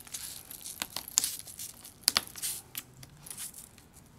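Hook-and-loop (Velcro) straps on a canvas annex draught skirt being peeled apart and pressed through: a few short scratchy rips with fabric rustling, the loudest about two seconds in.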